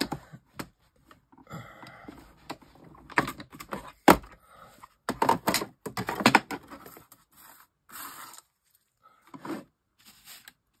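Clear acrylic die-cutting plates clacking and scraping against each other, with paper rustling as a die-cut word strip is peeled out from between them. A run of irregular clicks and rustles, the sharpest click about four seconds in.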